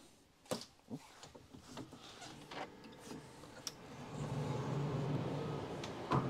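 A cabin's sliding glass balcony door being handled: a few light clicks and knocks. Then, as the door stands open, outdoor noise grows from about the middle, with a steady low hum.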